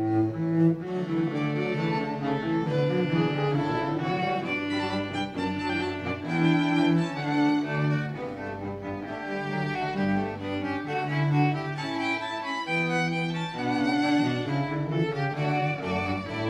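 Instrumental music played on bowed strings: a low cello or bass line moving note by note beneath higher violin parts.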